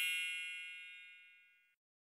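The ringing tail of a bright, bell-like chime sound effect: several high tones sound together and fade away, gone about one and a half seconds in.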